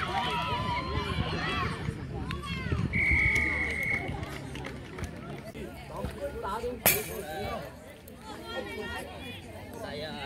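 Referee's whistle blown once, a steady high note of about a second, about three seconds in, over voices from the touchline and pitch. A sharp click comes near seven seconds.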